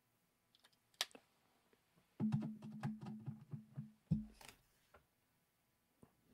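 A few clicks, then about two seconds of steady low electrical hum with crackling clicks, cut off by a pop. This is the kind of hum and pop an audio connection makes while being plugged in or switched, as the computer's audio output is changed over from wireless earbuds that have dropped out.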